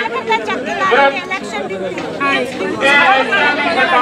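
Several women's voices talking at once, overlapping in close, animated conversation.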